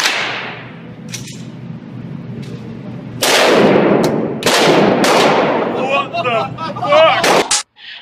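Large revolver fired at an indoor range: one shot at the start and two more about three and four and a half seconds in, each with a long echoing tail in the enclosed range. Excited voices follow near the end.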